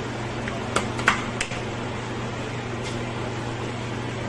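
Steady hum of a kitchen ventilation fan, with a few short sharp clicks about a second in.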